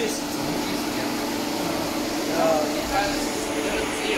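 Steady machine hum with one constant low tone running under the talk, as from running equipment or ventilation in a large hall.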